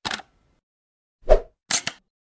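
Sound effects of an animated logo intro: a brief click at the start, a louder pop about a second and a third in, then a quick pair of clicks near the end.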